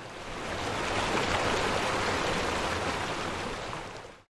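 Rushing noise of running water, like a stream, swelling over the first second, holding steady, and fading away near the end.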